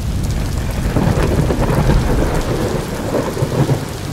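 A thunderstorm sound effect: rolling thunder rumbling continuously over steady rain.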